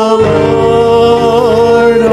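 Live worship band music: voices holding one long sung note over acoustic guitar and band accompaniment, with a slight waver in pitch near the end.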